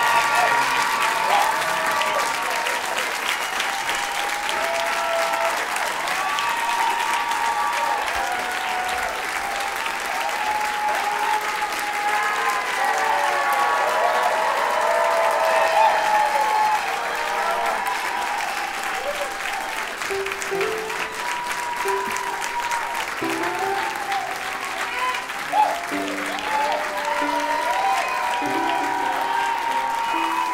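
Theatre audience applauding, with music playing underneath. The music's notes come through more clearly from about two-thirds of the way in.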